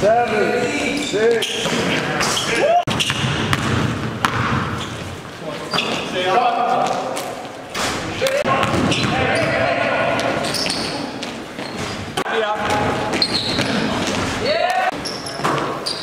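Basketball game in a large gym: a basketball bouncing on the court floor, sneakers squeaking, and players calling out, all echoing in the hall.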